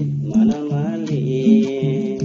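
A man singing a Nepali folk melody to his own strummed string-instrument accompaniment, over a steady repeating bass pattern; the sung phrase glides and ends in a long held note.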